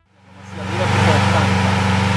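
A car engine idling steadily, fading in over the first half second, with faint voices in the background.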